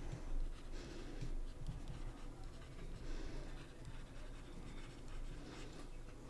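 Stylus writing a short handwritten phrase on a tablet screen: faint, irregular scratching and tapping strokes.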